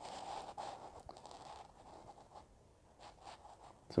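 Faint scraping and rustling, loudest in the first second or so and then thinning to a few soft ticks: handling noise from a phone held in the hand while filming.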